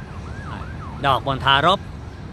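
A faint siren-like tone sweeping up and down about three times a second for most of the first second, then a man speaking briefly in Thai.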